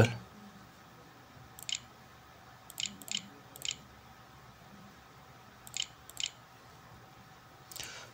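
Six faint, sharp computer mouse clicks at uneven intervals, each a quick press-and-release tick, as letters are clicked out one at a time on an on-screen keyboard. Faint steady room tone underneath.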